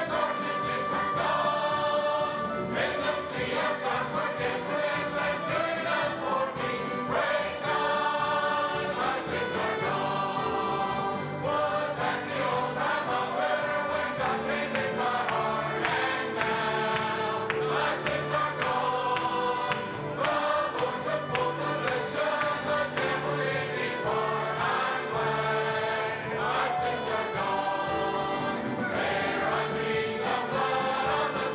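A large mixed church choir of men and women singing a gospel hymn in full voice with instrumental accompaniment, in continuous phrases.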